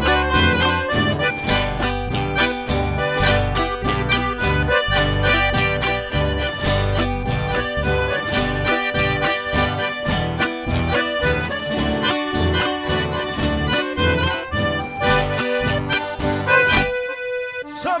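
Accordion-led band music with bass and a steady percussion beat; the low end drops out briefly near the end.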